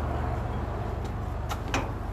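Steady low machine hum, with two light clicks about one and a half seconds in as the CNG dispenser's hose nozzle is lifted from its holder.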